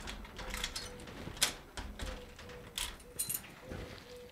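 A metal security screen door being handled: a scatter of sharp clicks and short metallic rattles from its latch and keys.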